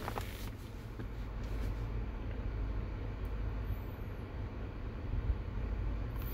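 Electric nail drill with a sanding band grinding along an acrylic nail tip to shape it: a steady, even grinding sound.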